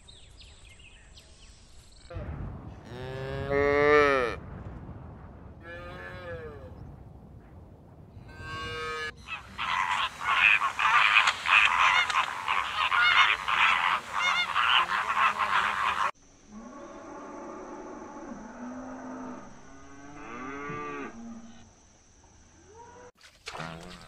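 A Highland cattle calf moos three times, the first call the loudest. Then a large flock of flamingos honks and chatters in a dense, loud clamour that cuts off suddenly. A few quieter, lower animal calls follow.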